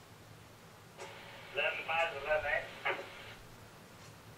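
A man speaking a short, unclear phrase about a second and a half in, lasting about a second and a half.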